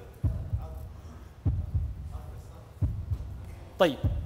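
A suspense heartbeat sound effect: deep double thumps repeating about every 1.3 seconds, building tension before a winner is announced.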